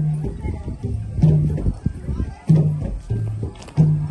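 Music: a low melody of held notes moving back and forth between two pitches, over a beat of sharp percussive knocks.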